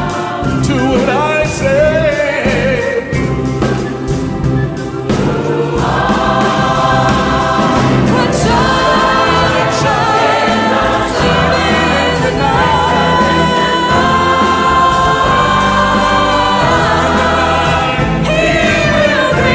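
A Christmas song sung by a choir with instrumental accompaniment; from about six seconds in the voices hold long notes.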